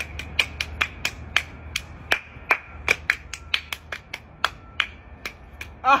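Quick run of sharp hand claps, about three to four a second at an uneven pace, from two people playing a hand-clapping game, over a steady low rumble.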